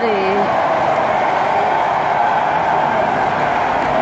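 Steady hubbub of a large crowd talking at once in a big hall, with no single voice standing out; one nearby voice trails off just at the start.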